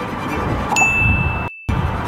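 A single high ding: a steady tone that starts suddenly about a third of the way in and holds for under a second, then cuts off with the rest of the sound in a brief total dropout. Wind noise on the microphone runs underneath.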